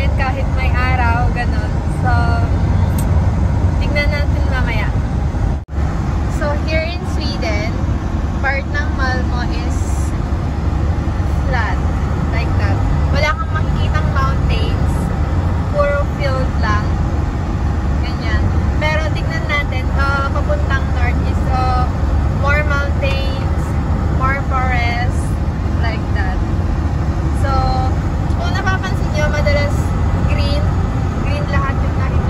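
Steady low road and engine rumble inside a motorhome cab at motorway speed, with a voice over it throughout. The sound drops out for a moment about six seconds in.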